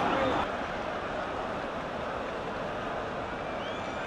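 Steady noise from a football stadium crowd, a dense wash of many distant voices with no single sound standing out.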